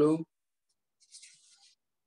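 A faint, brief rustle of a notebook's paper page being turned back, lasting under a second.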